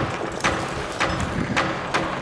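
Climbers' footsteps crunching in snow, one step a little more than every half second, over a steady rushing noise.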